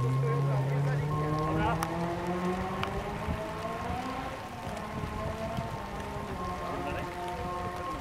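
Honda Civic EK4 rally car's engine pulling hard as it accelerates away on a wet road, its pitch rising for several seconds. Then it changes gear about halfway and carries on revving more faintly as it draws off into the distance, over the hiss of its tyres on wet tarmac.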